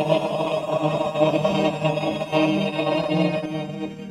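A choir holding the long final chord of a hymn, the voices wavering slightly in pitch.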